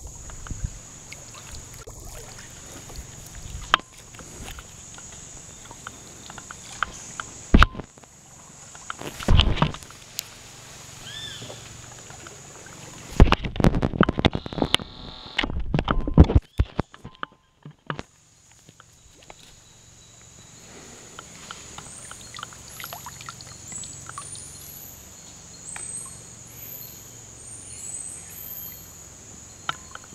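A canoe being paddled: paddle strokes with water sloshing and dripping, and several loud knocks and clatters around the middle. A steady high-pitched tone sits behind it, with short rising whistles near the end.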